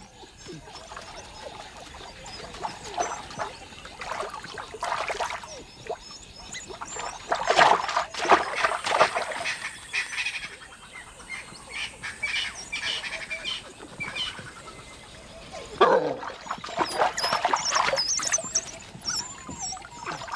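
African wild dogs calling with high-pitched chirps and twitters in irregular bursts, loudest about seven to nine seconds in and again from about sixteen seconds.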